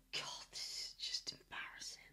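A person whispering in three short, breathy phrases.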